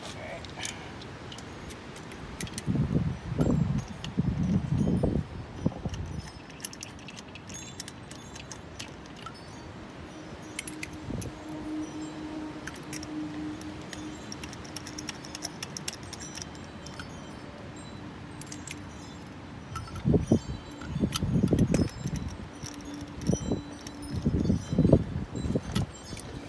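Light metallic clinks and jingles of chrome acorn lug nuts being turned onto the wheel studs by hand, with two stretches of duller handling noise.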